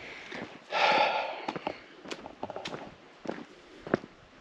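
Footsteps walking on a trail covered with dry fallen leaves, a series of short crunching steps about half a second apart. A loud breathy exhale comes about a second in and is the loudest sound.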